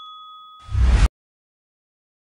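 Fading ring of a notification-bell 'ding' sound effect, followed about half a second in by a short, loud burst of noise that cuts off suddenly at about a second in.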